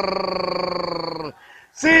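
A male football commentator's long drawn-out goal shout, one held note sinking slowly in pitch, breaking off just over a second in. After a brief pause he begins shouting again near the end.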